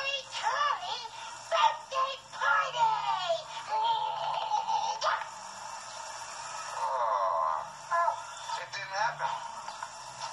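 A high voice singing a chant over music. It sounds thin and without bass, as if played through a television speaker.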